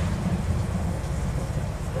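Steady, uneven low rumble of background noise with no distinct events.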